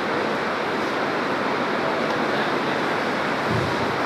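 Steady, even rushing hiss of background noise, with a brief low rumble near the end.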